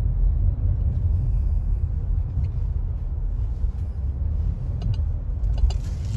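Steady low rumble of a car heard from inside its cabin as it moves slowly in traffic, with a few faint clicks.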